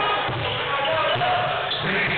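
Basketball dribbled on a hardwood gym floor, under a steady mix of voices.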